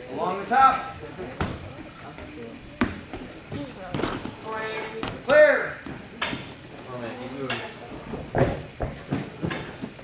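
A run of separate thuds and knocks as feet land on the padded and wooden obstacle boxes, mixed with voices calling out.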